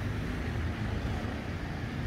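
Steady low outdoor rumble, with nothing standing out from it.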